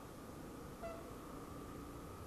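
Faint steady low rumble of a Honda CBX 250 Twister's single-cylinder engine and road noise while riding slowly, with one short high beep a little under a second in.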